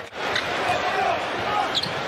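Basketball arena game sound: a basketball bouncing on the hardwood court over steady crowd noise, after a brief drop in sound right at the start where the broadcast cuts.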